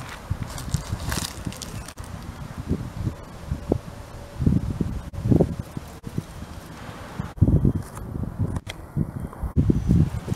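Irregular low buffeting and thumps on a handheld camera's microphone: wind and handling noise as the camera is moved about outdoors over dry leaves and grass.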